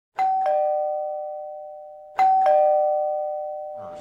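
Two-note ding-dong doorbell chime, a higher note followed by a lower one, sounded twice about two seconds apart, each ring fading out slowly.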